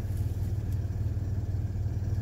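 Land Rover Discovery 3 engine idling steadily with a low, even hum.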